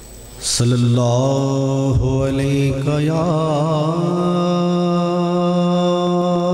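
Male voice chanting a long held note to open a naat, coming in loudly about half a second in, wavering in pitch for a couple of seconds and then held steady.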